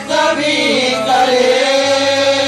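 Hindu devotional chanting with long held, gliding sung notes over instrumental accompaniment. There is a brief dip in level right at the start.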